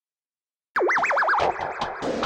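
Dead silence, then about three-quarters of a second in a cartoon 'boing' sound effect starts abruptly: a loud warbling tone that wobbles rapidly as it falls in pitch, running straight into music with a beat.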